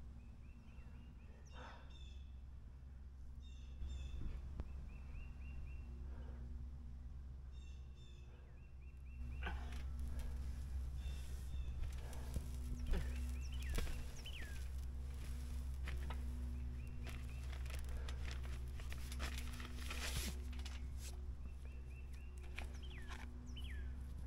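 Birds chirping in short repeated calls over a steady low background rumble. About ten seconds in, rustling and scattered clicks grow louder.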